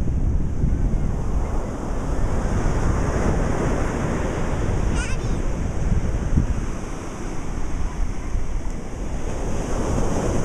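Wind buffeting the microphone with a low rumble, over a steady rush of ocean surf.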